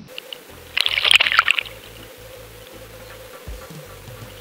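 A short water splash about a second in: a largemouth bass dropped from the hand back into the lake.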